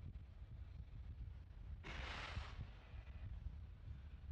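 A short burst of hissing gas venting from the fuelled Falcon 9 or its pad about two seconds in, lasting under a second and fading quickly, over a steady low rumble.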